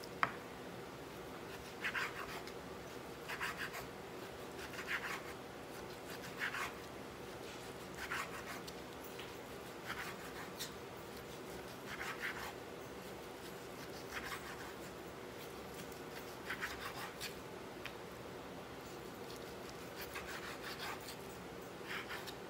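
A chef's knife slicing raw pork belly on a bamboo cutting board: a short scratchy cut every second or two, with the odd light tap of the blade on the wood.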